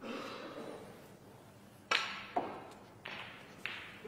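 Short knocks and clicks in a quiet, echoing hall: two sharp clicks about half a second apart near the middle, and a few softer knocks, each dying away briefly.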